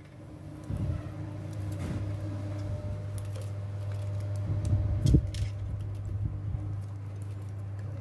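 Hands knotting a thin single-core wire wrapped around a CRT TV's flyback transformer: light rustles, small clicks and a few soft taps. A steady low hum sets in about a second in and runs underneath.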